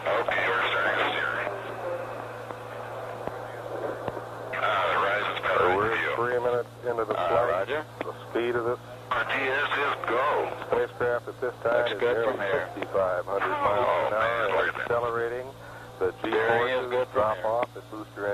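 Radio voice transmissions from the launch communications loop, thin and cut off above the mid-range, over a steady low hum. After a short pause about two seconds in, the talk resumes and runs on.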